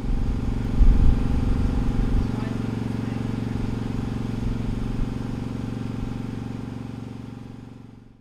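An engine running steadily at a constant pitch, with a louder low rumble about a second in; the sound fades out near the end.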